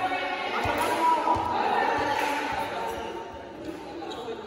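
A volleyball bouncing several times on a hard indoor court floor, with voices of players calling out over it.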